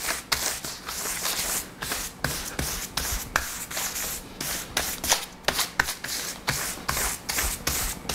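A stiff palm-fibre mounting brush scrubs hard over newspaper in quick repeated strokes, a dry rasp on the paper, about two to three strokes a second. It presses blotting paper down to draw the extra moisture out of a freshly backed rice-paper painting.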